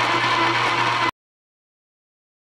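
Metal lathe running, a steady hum with a thin whine, as a grooving cut on a small rod gets under way. The sound cuts off suddenly to dead silence about a second in.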